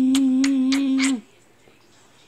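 A person humming one steady, unchanging note that stops just over a second in. Five quick clicks, about three a second, sound over the hum.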